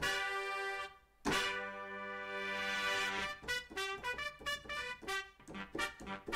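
Sampled trumpet section from Native Instruments Session Horns playing a funk horn line: a short held chord, a brief gap, a longer held chord, then a run of quick staccato stabs about three or four a second.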